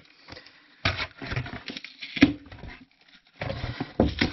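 Flattened cardboard box being handled and laid into an empty plastic mortar tray: irregular crackles and taps, one sharp tap a little past two seconds, and rustling near the end.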